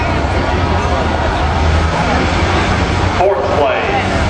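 Steady rumble of an engine running in the background under a murmur of crowd chatter.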